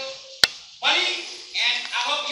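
A single sharp knock about half a second in, then a man's voice speaking loudly in the bright, carrying manner of a stage actor.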